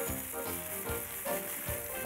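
Cartoon sound effect of dry cereal pouring from a box into a bowl: a steady hiss that stops near the end, over light children's background music.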